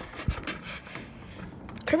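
A person breathing close to a phone microphone, with a soft low thump about a quarter second in.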